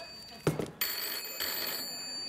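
Telephone bell ringing in two rings, with a short break about half a second in. A sharp knock falls in the break.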